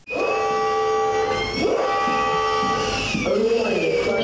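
A fire-alarm siren wailing steadily in several held tones, with dogs barking over it a couple of times.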